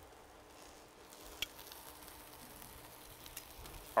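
Faint, steady sizzling of food in a skillet on a stovetop, with a small sharp click about one and a half seconds in.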